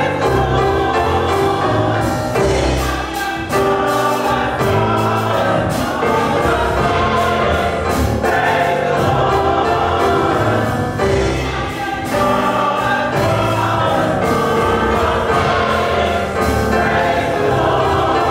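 Church choir singing a gospel song with instrumental accompaniment and a steady beat, without a break.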